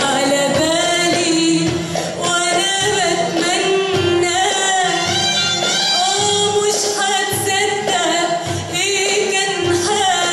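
A woman singing a classic Egyptian song live, backed by an Arabic music ensemble with oud and nay. She holds long notes with vibrato and ornaments.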